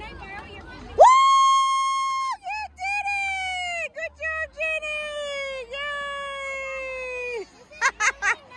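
A high-pitched voice screaming: one long, steady shriek about a second in, then several drawn-out notes that slide downward, broken by short gaps.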